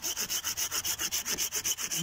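Hand pruning saw cutting through a thick dead pine branch in quick, even rasping strokes, about six a second.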